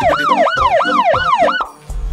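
Police siren sound effect in a fast yelp, its pitch swooping up and down about three times a second; it cuts off about a second and a half in, and a deep bass note starts at the very end.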